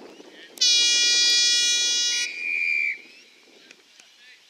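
Football ground siren sounding the end of the quarter. A loud, steady blast starts about half a second in, changes after about a second and a half to a thinner, higher tone, and cuts off about three seconds in.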